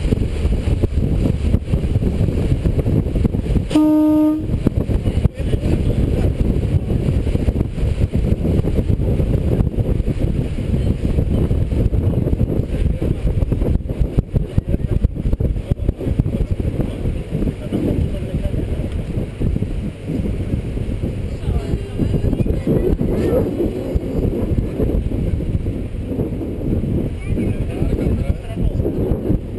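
Lake ferry underway, its engine a steady low rumble mixed with wind buffeting the microphone. A single short horn toot sounds about four seconds in.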